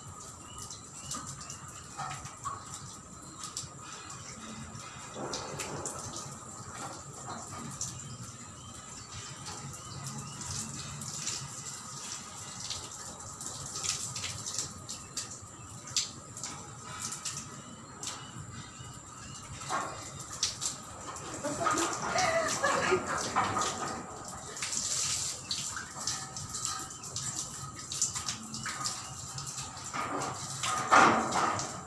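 Water from a garden hose spraying and splashing against a metal window grille and glass, a steady wash of water with many small spatters and knocks. A louder pitched sound comes in a little over two-thirds of the way through.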